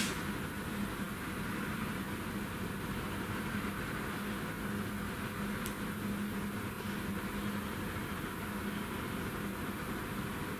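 Steady room background hum and hiss, with a faint low tone held throughout, and a faint tick about halfway through.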